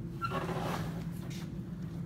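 Low, steady mechanical hum from the channel letter bending machine. A faint, brief rustle of handling comes about half a second in.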